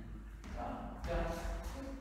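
A voice calling out the dance step "down" in a swing rhythm, over light shuffling and tapping of dancers' shoes on a wooden floor.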